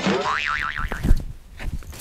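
Cartoon 'boing' sound effect: a sudden springy tone that wobbles up and down several times and fades, with a short knock about a second in.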